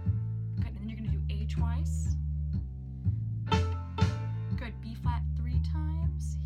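Violin played pizzicato: short plucked notes on the strings, over a backing track with a steady, repeating bass line.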